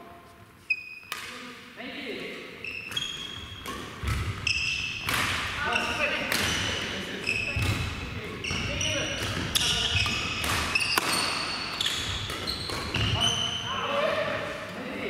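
Badminton doubles rally on a wooden gym floor: repeated sharp racket strikes on the shuttlecock, short high shoe squeaks and footfalls. Everything rings with the echo of a large hall.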